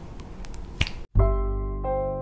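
A single finger snap, then piano music starts about a second in, playing held chords.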